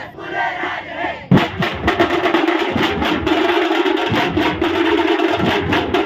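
Crowd shouting, then about a second in a troupe of Maharashtrian dhol drums, large barrel drums beaten with sticks, strikes up a loud, fast, steady rhythm.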